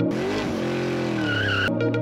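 A noisy whoosh with slowly sliding low tones and a short wavering high squeal a little past the middle, a soundtrack effect or break in electronic music. The music's ticking beat comes back near the end.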